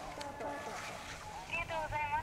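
Voices of people on the ski slope calling out, with a loud, high, wavering call starting about a second and a half in, over a faint background hiss.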